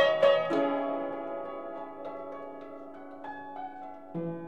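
Upright piano playing: a few quickly struck notes, then a held chord that slowly fades, with a few light single notes over it.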